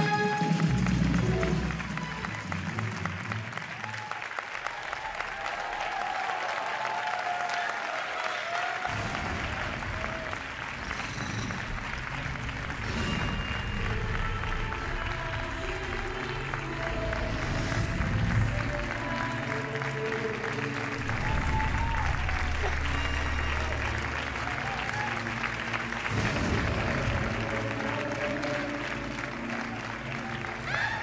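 Audience applauding over loud runway music. The music's heavy bass drops away briefly and comes back strongly about nine seconds in.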